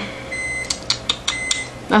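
Microwave oven beeping to signal that its heating cycle has finished: two high, steady beeps about a second apart, with a few sharp clicks between them.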